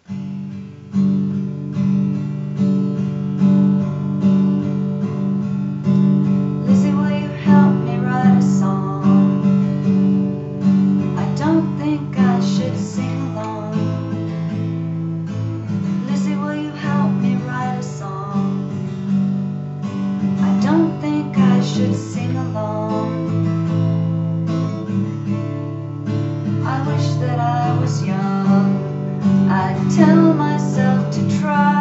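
Acoustic guitar strummed, playing chords.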